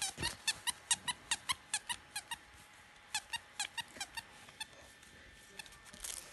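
A plush toy's squeaker squeezed over and over, giving short high squeaks about five a second. There is a brief pause, then another run that stops a second before the end.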